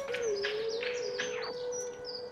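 Small garden birds chirping: a quick run of about five falling chirps in the first second and a half, with a few fainter ones later, over a steady low held tone.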